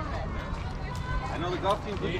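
Indistinct voices of players and spectators calling out at a softball game, over a steady low background noise.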